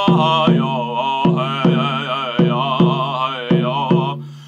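A man singing a chant-like song, accompanying himself with a steady beat on a large painted drum struck with a padded beater, about two and a half beats a second. Voice and drum stop right at the end.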